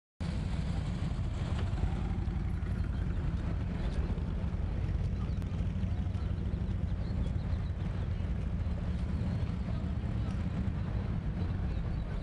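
Wind buffeting the microphone: a steady low rumble that covers the other sounds.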